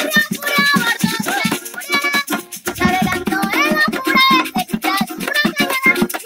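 A girl singing a song, shaking maracas in rhythm, accompanied by a man strumming a small guitar.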